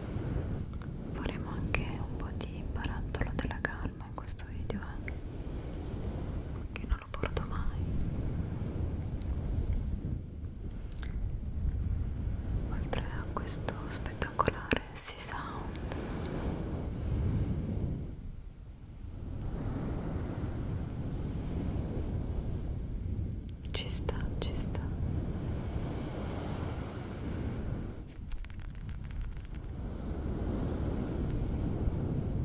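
Close-up whispering into a microphone with a furry windscreen, over a low rumbling hush of hands moving against and around the fluffy mic cover; the sound dips briefly near the middle.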